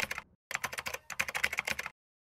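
Computer-keyboard typing sound effect: rapid key clicks, about ten a second, in short runs with two brief breaks, stopping suddenly near the end.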